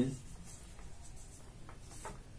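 A marker pen writing on a paper chart, in faint short strokes.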